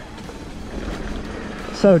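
Mountain bike rolling along a dirt trail: a steady rush of tyre and wind noise on the action camera's microphone, with a short spoken word near the end.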